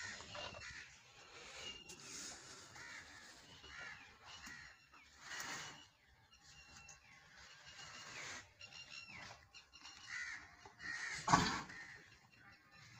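Birds calling over and over with short caw-like calls, several a second at times, and a brief, louder sound near the end.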